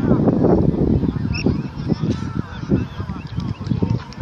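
Wind buffeting the microphone in an irregular low rumble, with faint distant shouts and a short honking call.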